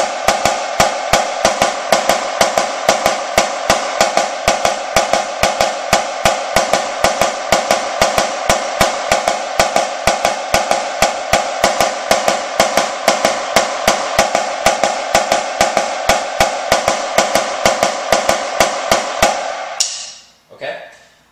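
Premier marching snare drum played with sticks: a dense, even stream of double strokes, the double-beat rudiment exercise (a stripped-down roll), with louder strokes recurring two or three times a second. The playing stops just before the end.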